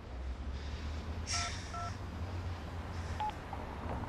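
Mobile phone keypad beeps as a number is dialled: two short two-tone beeps about half a second apart, a brief hiss with the first, then a single beep about three seconds in, over a low steady hum.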